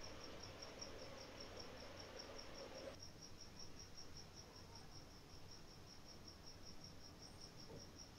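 Near silence: faint background hiss with a faint, high-pitched pulsing that repeats evenly about five times a second.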